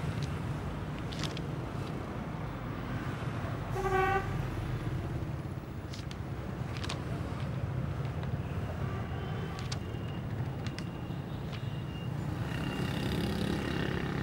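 Steady low rumble of distant road traffic, with one short vehicle horn toot about four seconds in.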